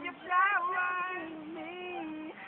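A young man singing unaccompanied in a high voice, in short phrases of long held notes that waver slightly in pitch.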